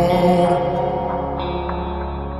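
Slowed-and-reverb Bengali song playing: sustained held tones over a steady low bass, in a gap between sung lines.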